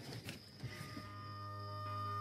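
Soundtrack music fading in: a low held bass note with steady sustained tones above it, entering under a second in and swelling gradually.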